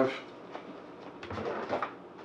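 Faint handling sounds of raw chicken being pulled from a plastic zip-top bag, with a soft thump on a wooden cutting board just over a second in.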